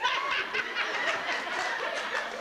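Audience laughing, many voices together in a hall, just after a line of dialogue.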